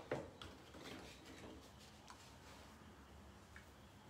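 Near silence: room tone, with a few faint ticks in the first second and a half.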